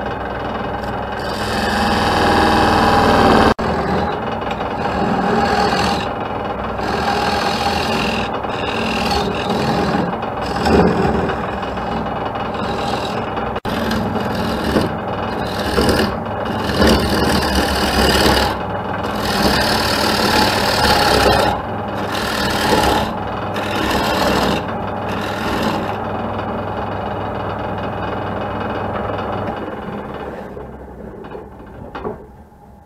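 Wood lathe spinning a dry maple platter blank while a turning tool cuts its face: a rough scraping of steel on wood that swells and eases in strokes, over the steady hum of the lathe's motor. Near the end the cutting stops and only the running lathe is left.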